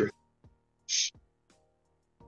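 A pause in a man's talk over faint background music: a word ends right at the start, then a single short breathy hiss about a second in.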